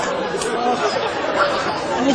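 Several people talking over one another in indistinct, overlapping chatter.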